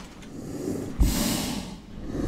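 Heavy breathing through a gas mask respirator, two hissing breaths, the second starting sharply about a second in with a low thud.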